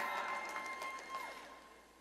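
Faint, scattered audience response in a large hall, a few claps and cheers with a thin whistle, fading away to near silence near the end.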